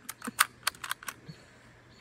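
Mosin–Nagant 91/30 bolt-action rifle being loaded by hand: a quick run of small metallic clicks at the action in about the first second as cartridges are pressed into the magazine.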